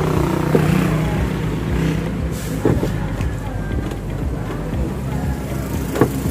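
A plastic car tail light housing being handled and pressed back into its opening in the body, with a few short knocks. A steady low mechanical hum runs underneath.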